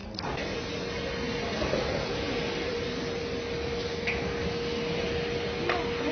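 Airport terminal ambience: a steady mechanical drone with one constant humming tone through it, starting abruptly just after the start, and faint voices in the background.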